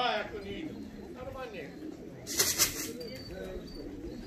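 Racing pigeons cooing softly at the loft. A short burst of quick wing flaps comes a little over two seconds in, as a pigeon comes in to land.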